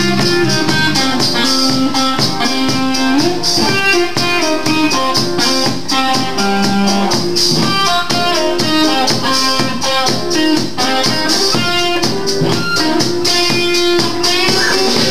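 A live rock band plays instrumentally: an electric guitar plays a riff over a drum kit keeping a steady beat, with no singing.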